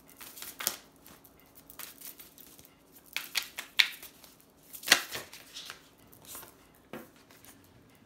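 A deck of oracle cards being shuffled and handled by hand: irregular papery flicks and snaps, the loudest about five seconds in.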